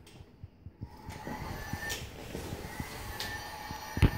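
Children's toy vacuum cleaners running and being pushed over the floor: a low, steady whirr that starts about a second in, with many small clicks and rattles.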